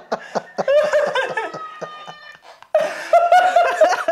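People laughing heartily in short rhythmic bursts of 'ha-ha', dropping off briefly and then breaking out louder again about three seconds in.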